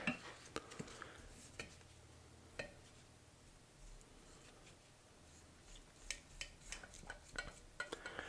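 Faint small clicks and taps of metal hemostats and a paint brush against a glass jar of paint stripper as stripper-softened paint is brushed off a die-cast body. A few ticks in the first couple of seconds, a quiet stretch, then a cluster of quicker taps near the end.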